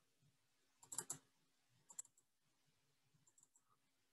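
Faint clicking of a computer's keys and mouse buttons during spreadsheet work, otherwise near silence: a quick cluster of three or four clicks about a second in, a pair about two seconds in, and a few softer ticks later. A faint steady hum sits underneath.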